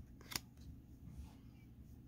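Cardboard trading cards being handled in the hand, with one short sharp click of card stock about a third of a second in, then only faint handling sounds.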